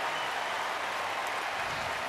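Large arena crowd applauding, a steady even wash of clapping and cheering.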